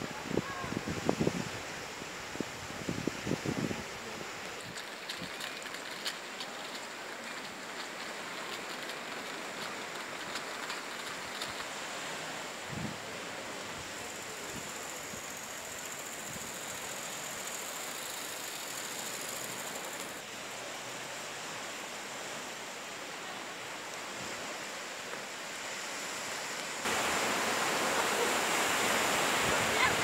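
Steady rush of small Mediterranean waves breaking on a sandy beach, mixed with wind noise on the microphone. Brief voices of passers-by in the first few seconds, and the noise jumps suddenly louder near the end.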